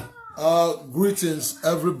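A man's voice calling out in three drawn-out phrases whose pitch slides up and down, as he opens a spoken greeting.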